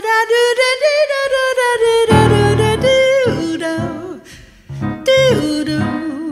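A female jazz singer singing wordless, scat-style lines with vibrato over grand piano chords: one long held note first, then shorter sliding phrases with a brief pause a little past four seconds in.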